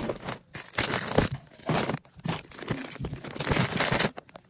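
Plastic snack bags and packages crinkling and rustling in irregular bursts as a hand pushes and arranges them inside a cardboard box.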